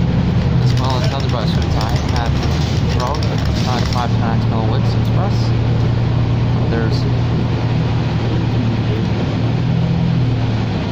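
Cabin of a New Flyer Xcelsior XD60 diesel articulated bus under way: a steady low drone from the engine and drivetrain. Voices talk over it for the first few seconds.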